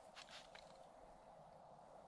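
Near silence: faint outdoor room tone with a few soft clicks in the first half second.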